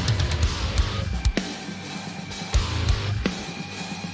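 Heavy metal band playing: drum kit hits and cymbals over distorted electric guitar, in a live drum-cam mix with the drums up front.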